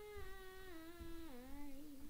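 A child's voice holding one long, steady note that steps down in pitch about two-thirds of the way through, played back from an old voice-memo recording.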